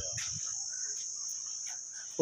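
A steady, high-pitched insect drone that runs without a break, with a few faint clicks.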